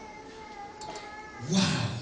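A man's voice exclaiming a loud, drawn-out "Wow" near the end, over faint sustained tones.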